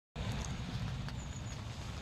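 Heavy rain falling steadily, many drops pattering on the fabric of a carp-fishing bivvy close by.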